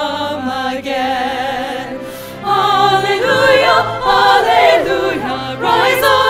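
Women's chorus singing long, drawn-out notes of a hymn-like Easter song, swelling louder about two and a half seconds in.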